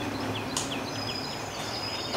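A run of short, high chirps in quick succession, like a small bird's, over a steady low hum of room tone, with a single sharp click about half a second in.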